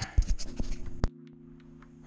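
Hand handling the camera: a run of scratchy clicks and knocks, the sharpest about a second in, after which the sound drops suddenly to a faint steady hum.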